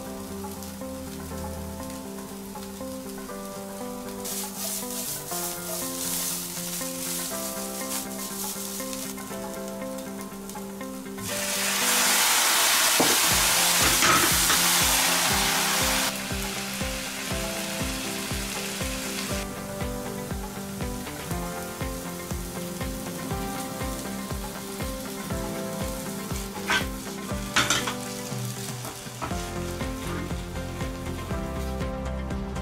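Ground meat and onion sizzling in a hot nonstick frying pan. About eleven seconds in, a sudden loud burst of sizzling as liquid goes into the hot pan, lasting about five seconds before settling back to a lighter sizzle. Two sharp knocks near the end, with light background music throughout.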